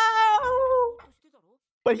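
A man's long, high-pitched wail, held on one note, stepping up slightly in pitch and then fading out about a second in. Speech starts again near the end.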